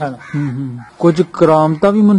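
A man speaking in Punjabi in a steady, narrating voice.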